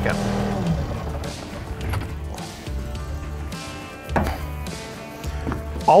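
Skid steer (compact track loader) engine being shut off: the idle winds down and dies out within the first second. A few sharp knocks follow.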